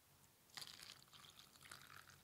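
Tiger nut and ginger drink poured from a plastic jug into a small glass: a faint, uneven trickle that starts about half a second in.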